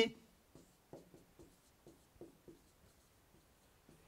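Faint marker strokes on a whiteboard, a string of short squeaks and scratches over the first two and a half seconds as a formula is written.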